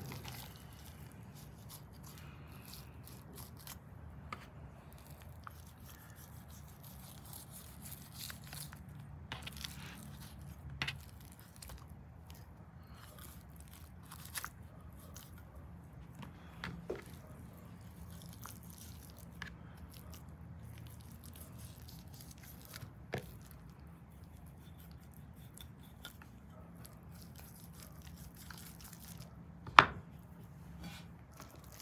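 Raw beef fat and membrane being pulled and cut away from a whole tenderloin on a wooden cutting board: quiet, soft tearing with scattered small clicks, and one sharp knock just before the end. A faint low hum runs underneath.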